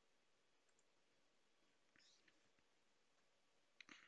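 Near silence: room tone, with a faint short sound about two seconds in and a sharp computer-mouse click just before the end, as a web link is clicked.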